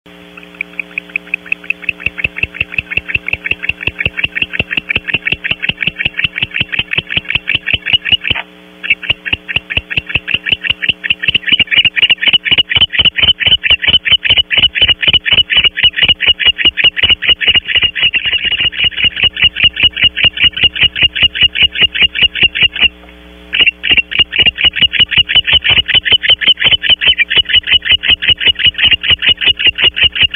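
Barn owl giving a rapid, steady series of short ticking calls, about five a second, loud and close to the microphone, with two brief pauses.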